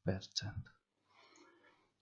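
A man's voice trailing off in the first half-second, then faint computer mouse clicking as the screen is navigated to another page.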